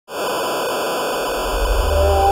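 Loud, steady television-style static hiss that starts abruptly. A low bass note from music begins to come in under it during the last half second.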